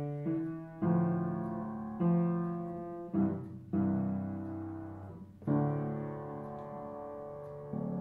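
Piano playing a slow run of soft chords, each struck and left to ring, with a long-held chord in the second half: the quiet, slowed ending of the piece under a ritardando.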